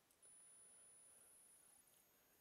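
Near silence: faint room tone with a thin, steady high-pitched whine.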